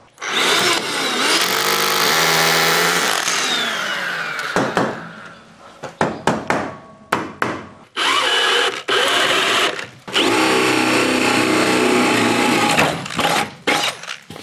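Cordless drill boring through a wooden shelf with a flat wood bit. It runs in two long bursts: the first winds down about four seconds in, a few knocks follow, and the second starts just past halfway and runs until near the end.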